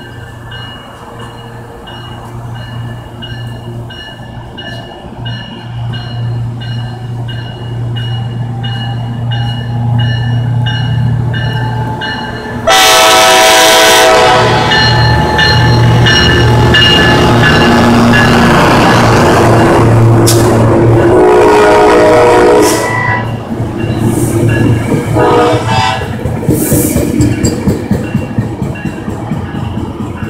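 Brookville BL36PH diesel locomotive approaching with its engine rumbling under a bell ringing at a steady, even beat. About 13 s in it sounds a very loud horn, then passes close by with loud engine and wheel noise, which fades about 23 s in to quieter rolling noise with more bell ringing and short horn tones.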